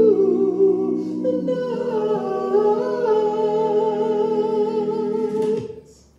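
A man singing long held notes with vibrato into a handheld microphone over a karaoke backing track whose sustained chord sits beneath his voice. He moves to a new note about a second and a half in and holds it until he stops shortly before the end.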